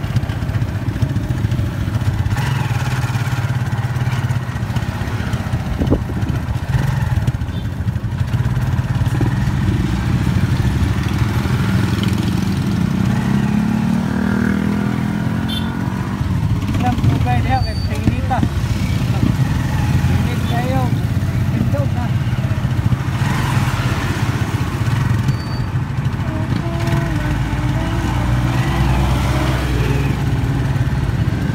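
A vehicle engine running steadily at low revs, a low even hum heard from on board in slow traffic, with street traffic noise around it.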